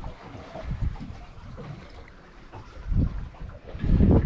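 Wind buffeting the microphone over the wash of water against the hull of a boat at sea, in uneven gusts that grow louder about three seconds in and again at the end.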